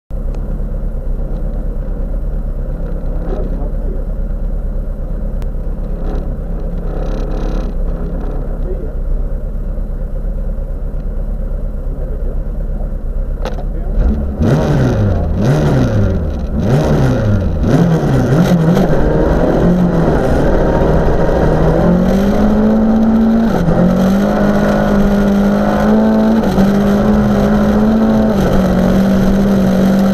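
Volvo 940 rally car's engine heard from inside the cabin: idling steadily, then revved up and down several times in quick succession about halfway through. It then pulls away hard from the standing start and climbs through the gears, the engine note rising and dropping back at each upshift.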